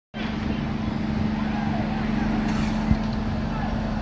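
A fire truck's engine running with a steady hum, with people's voices faint in the background and one sharp click about three seconds in.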